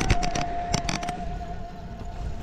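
Wind and road noise on a camera mounted on a moving bicycle, with a steady high whine and a few sharp clicks in the first second.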